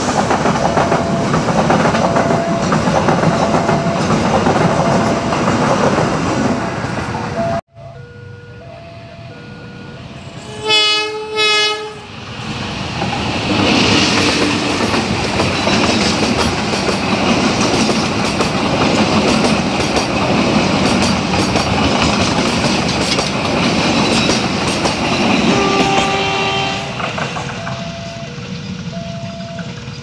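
Passenger train coaches rolling past close by on the rails, under a level-crossing warning alarm that alternates between two tones. About ten seconds in, a train horn sounds in two short blasts, followed by another long stretch of coaches passing close. Near the end the passing noise fades and the two-tone crossing alarm is heard again.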